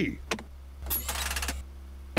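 Cartoon sound effect of a car dashboard button being pressed: a click, then a rapid whirring rattle lasting under a second, over a low steady hum.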